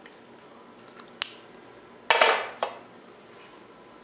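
A small plastic remote control being picked up and handled against a hard surface: a light click about a second in, then a brief clatter with a short second knock a little after two seconds.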